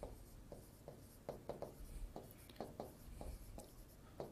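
Faint, irregular taps and scratches of a stylus writing on an interactive smartboard screen.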